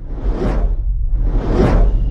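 Intro sound-design effects: two swelling whooshes about a second apart, each rising and fading, over a deep steady rumble.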